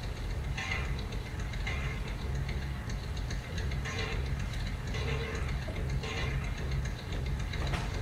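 Background music from a projected documentary film: a low steady drone with a soft tick about once a second, heard through a hall's loudspeakers.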